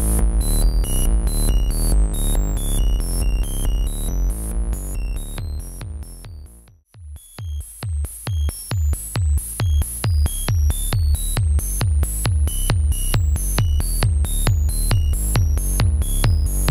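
ARP 2600 playing a self-patched techno loop. A kick made from the resonant filter alternates with a white-noise hi-hat through the electronic switch, under a square-wave bass and a ring-modulator lead that jumps between random pitches set by the sample and hold. About seven seconds in the whole loop fades out to silence, then swells back in.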